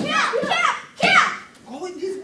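Children's voices shouting several short, high-pitched calls in quick succession, the kiai shouts of young karate students striking as they drill.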